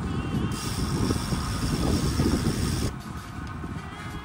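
Wind rumbling and buffeting over the microphone of a phone carried on a moving bicycle. A steady hiss joins it about half a second in and cuts off abruptly near three seconds.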